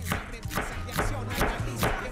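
Chef's knife slicing an onion into thin julienne strips on a wooden cutting board, the blade knocking the board in a steady rhythm of about four cuts a second.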